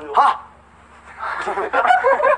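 A short high-pitched yelp, then a pause and several young men laughing and chattering.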